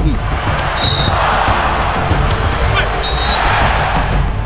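Basketball game sound over background music: arena crowd noise with two short high squeaks, one about a second in and one near three seconds in.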